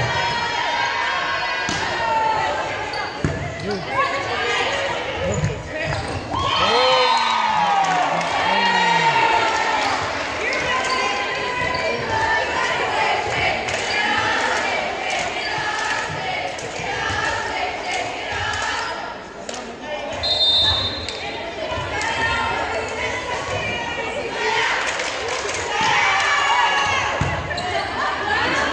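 Players and spectators calling out and cheering in an echoing gymnasium during a volleyball match, with scattered thumps of the ball being hit.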